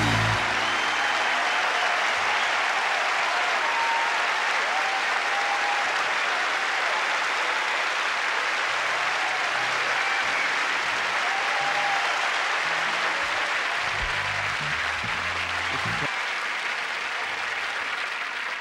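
Concert audience applauding steadily as a jazz number ends, the clapping slowly tapering off. A few scattered low bass and guitar notes sound in the second half.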